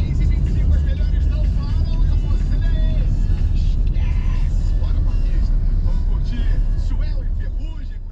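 Steady low rumble of riding in a road vehicle, mixed with people's voices and music from outside, fading out near the end.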